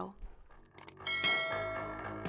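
Subscribe-button animation sound effect: a short click or two, then about a second in a bright bell chime that rings on and slowly fades.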